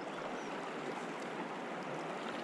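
Steady rush of flowing stream water.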